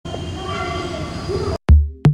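Outdoor crowd chatter and street noise, which cuts off abruptly. A moment later a loud electronic drum hit with deep bass sounds, the first beat of a music track.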